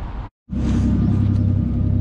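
A car engine idling with a steady low hum. The sound cuts out for a moment about a third of a second in, then comes back.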